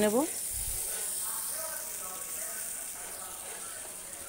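Thick spice paste of ground sesame and cashew-almond frying in oil in a nonstick kadai, with a steady sizzle as a spatula stirs it. The masala is being sautéed (kosha) to cook it down.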